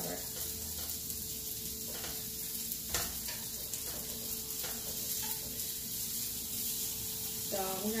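Sausage sizzling in a frying pan: a steady frying hiss, with a few light clicks.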